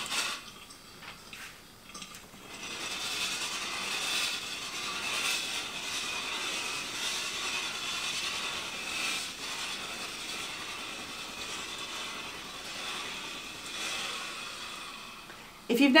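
Tefal Express Anti Calc steam generator iron in vertical steaming mode: a steady hiss of steam from the soleplate into a hanging garment. It starts about two seconds in and carries on with small swells.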